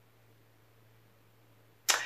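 Near silence with a faint steady low hum for most of it. Near the end comes a quick, sharp intake of breath just before speech resumes.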